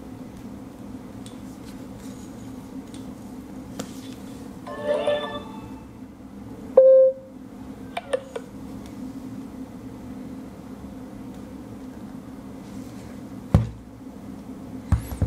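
Two smartphones being handled against a steady low hum: a few light clicks, a short, loud electronic beep about seven seconds in, and a sharp knock near the end.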